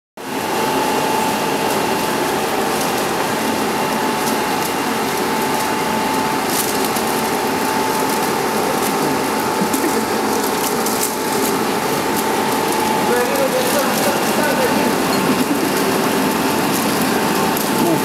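LFQ slitting rewinder machine running: a steady mechanical rush with a constant whine over it.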